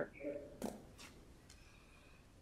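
A brief murmured voice fragment, then two sharp clicks about half a second apart and a fainter third one, over quiet room tone.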